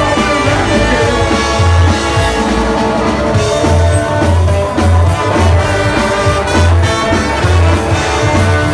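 Live rockabilly band playing: trumpet and trombone carry the lead over upright bass, electric hollow-body guitar and drums, with the bass notes pulsing steadily underneath.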